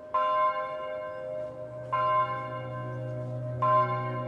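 A bell struck three times, roughly two seconds apart, each stroke ringing on and slowly dying away.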